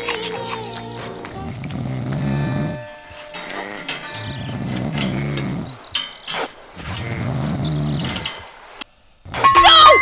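Cartoon sound effects over a light music bed: three deep, pulsing, growling voice sounds, each about a second and a half long, then a brief hush and a loud sudden outburst with falling pitch near the end as Santa's backside lands on the hot grill.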